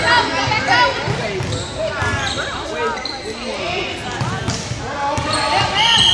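Basketball bouncing on a hardwood gym floor during play, under overlapping shouts and calls from players and sideline voices that echo in a large gym. A short high squeal comes near the end.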